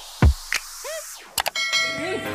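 Subscribe-button animation sound effects over a beat: a low thump and clicks, a short boing that rises and falls in pitch, then a bell ringing with many overtones from about one and a half seconds in.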